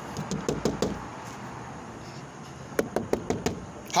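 Knuckles rapping on a hard surface in two rounds of about six quick knocks each, a couple of seconds apart, acting out a knock on a house door.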